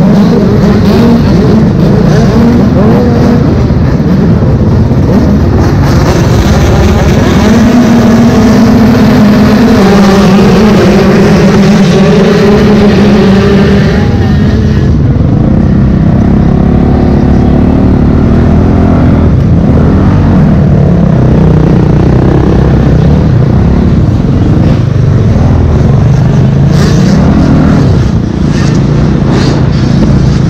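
Motocross bike engine heard from an onboard camera, very loud throughout, its revs rising and falling as it is ridden around a dirt supercross track.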